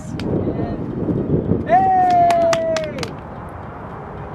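Low wind rumble on the microphone, then a person's long held vocal cry lasting about a second and a half and falling slightly at the end, with a few sharp taps under it.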